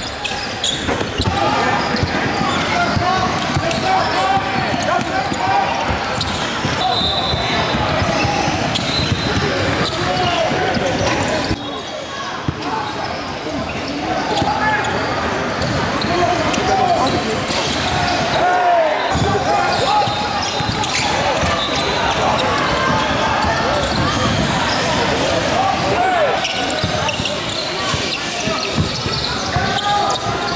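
Live game sound in a large gym: a basketball bouncing on the hardwood floor among indistinct voices of players and spectators, all echoing in the hall, with a few brief drops where clips are cut together.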